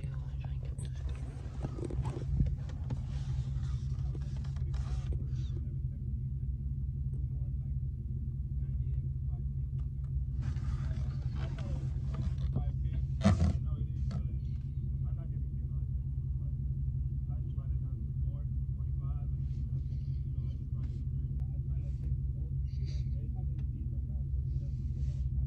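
A car's engine and exhaust give a steady low drone, heard from inside the cabin while driving. A single sharp thump comes about 13 seconds in.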